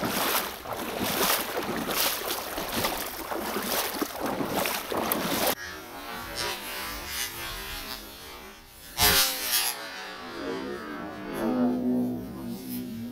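Wind rushing on the microphone with water sloshing close by, from movement in shallow marsh water, ending abruptly about halfway through. After that it is quieter, with one short, loud burst of noise about nine seconds in.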